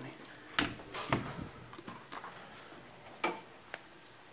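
A few sharp clicks and knocks from a hinged elevator landing door's metal pull handle and latch being handled: two close together about half a second and a second in, the second the loudest, then two lighter ones near the end.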